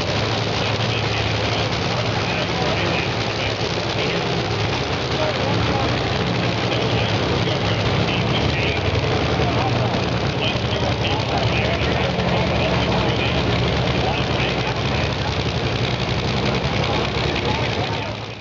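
An engine idling steadily, with indistinct voices over it.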